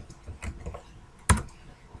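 Keystrokes on a computer keyboard: a few scattered taps, with one much louder key strike just over a second in.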